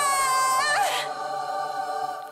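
Choir-like layered sung vocals hold a long note that ends in a short flourish about a second in, then fade away.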